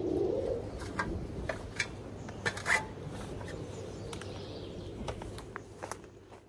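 A pigeon cooing low in the first moments, over faint outdoor background with scattered small clicks.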